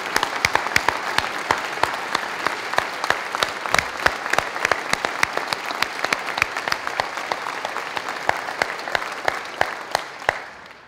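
Audience applauding steadily, a dense patter of many hands clapping, dying away near the end.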